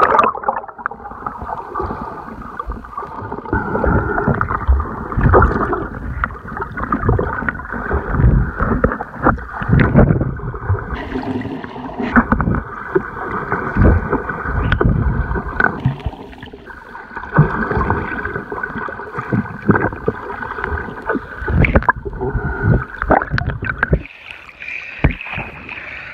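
Swimmers kicking and splashing, heard under water: muffled churning and bubbling that surges and falls irregularly, with dull thumps. Near the end the sound comes from above the surface, thinner and hissier.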